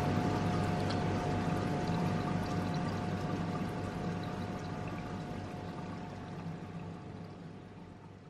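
Reef aquarium water circulating, a steady pouring and trickling of water with a steady hum from the tank's pump, gradually fading out.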